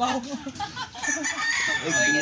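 A rooster crowing, a long drawn-out call starting about halfway in, over a voice heard at the start.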